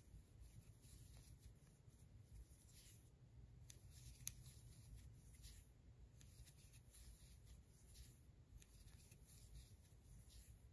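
Faint, irregular rustling and scratching of a metal crochet hook pulling yarn through stitches while working half double crochet, with one small sharp click about four seconds in.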